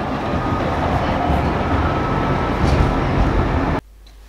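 Tram running, heard from inside the car: a steady rumbling noise with a faint steady whine. It cuts off suddenly near the end.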